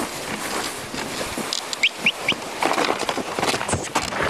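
Sled and Alaskan Malamute sled dogs ploughing through deep snow: a steady crunching hiss with many small scrapes and crackles, and three short rising squeaks about two seconds in.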